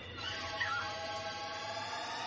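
Suspenseful TV-drama underscore of several held, layered tones that swell slightly, with short wavering high notes in the first second.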